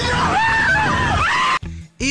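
People screaming in a car over loud music with a heavy beat. The sound cuts off abruptly about a second and a half in.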